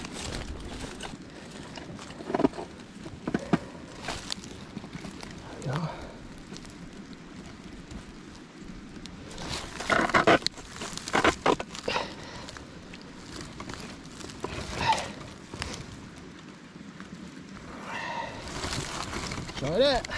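Gloved hands rustling dry brush and twigs, with scattered knocks and clicks against a wooden mink box as a 120 Conibear body-grip trap is set inside it; the densest run of knocks comes about ten seconds in.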